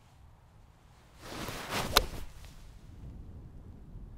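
Golf iron swung at a ball: a rising swish of the downswing, then one sharp crack as the clubface strikes the ball about two seconds in, fading away after. The crack is a clean strike.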